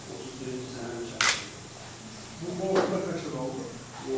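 A man speaking in a small room, with two sharp clicks cutting across the talk, one a little over a second in and a weaker one about a second and a half later.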